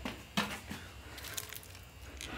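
A few light clicks and rustles of hands-on handling, with two small knocks in the first second and fainter crackle after.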